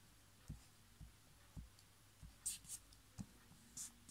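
Glue stick rubbed over paper: a couple of short scraping swipes past the middle and another near the end, with faint low knocks against the notebook page.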